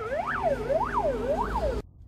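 Fire engine siren wailing in quick rise-and-fall sweeps, about three in two seconds, over the low rumble of a car driving behind it; it cuts off sharply just before the end.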